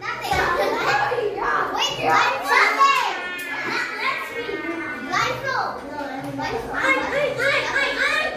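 A group of children talking and calling out over one another.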